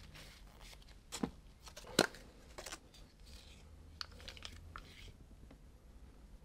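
Plastic paint cups and a stir stick being handled: scattered small clicks and knocks, with two sharper taps about one and two seconds in, over a low steady hum.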